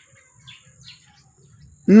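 Faint, scattered bird chirps over quiet outdoor background, with a man's voice starting right at the end.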